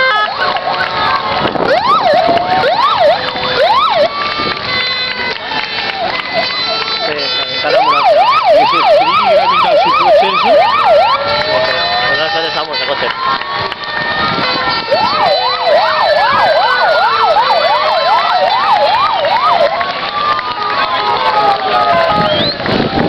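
Several ambulance sirens sounding at once as a line of emergency vehicles drives past. Slow rising-and-falling wails overlap with rapid yelping cycles, about three a second, which come in twice: about eight seconds in and again from about fifteen seconds.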